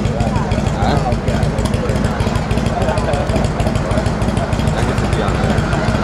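Chopper motorcycle engine running at idle, a steady low rumble, with people talking around it.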